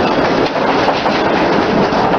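Loud, steady rumbling and rattling during the shaking of a strong earthquake, with no voices over it.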